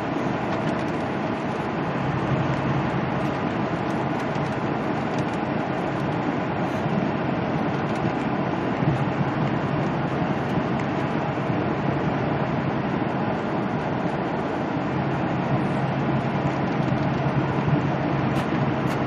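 Steady drone inside a semi-truck's cab cruising at highway speed: diesel engine hum mixed with tyre and road noise. A low engine hum swells and fades a couple of times.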